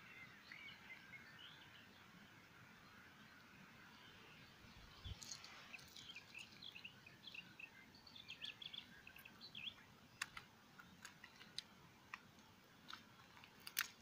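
Quiet outdoor background with faint bird chirps, and from about five seconds in a few small clicks and crinkles of fingers working the wrapper off the top of a hand-held smoke grenade.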